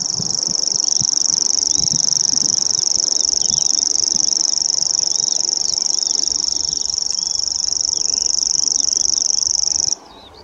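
Grasshopper warbler reeling: one unbroken, high-pitched, insect-like trill held without a break, which cuts off abruptly at the very end. Fainter calls of other birds sound underneath.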